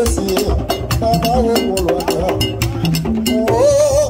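Live Haitian Vodou drumming on tall hand drums: a busy pattern of strikes several to the second with sharp wood-like clicks. Voices sing over it in wavering held notes.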